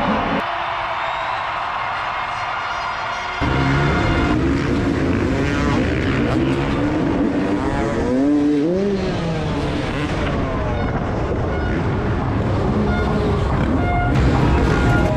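Dirt bike engine revving up and down with music playing underneath. The sound is thin for the first few seconds, then comes in fuller and louder with rising and falling revs.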